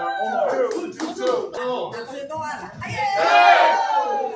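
Several voices shouting and calling out together, with a quick run of sharp slaps about a second in and a loud, drawn-out yell near the end.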